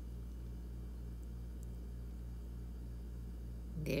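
A steady low machine hum with an even throbbing pulse about three times a second: background noise from around the house.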